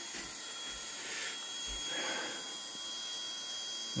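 KTM 690 electric fuel pump running dead-headed against a pressure gauge: a steady whir with a thin high whine that comes in about a second in. Pressure builds slowly, which the mechanic takes as the sign of a failing pump with unsteady output.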